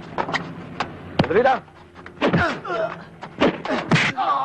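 Fistfight sound effects: a quick run of sharp punch and blow impacts, with short pained cries and grunts between them that slide down in pitch.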